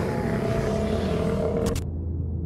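Loud rushing sound effect over a low, steady drone with several held tones; the rush cuts off abruptly near the end, leaving the drone.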